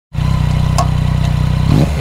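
Yamaha MT-09 Tracer's inline-three engine with an Akrapovic exhaust running steadily at low revs, then revving up near the end. A couple of light clicks sound over it.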